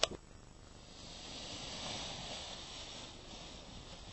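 Soft rushing rustle of a paraglider wing being pulled up off the slope and filling with air; it swells about two seconds in and then eases off. A sharp click comes at the very start.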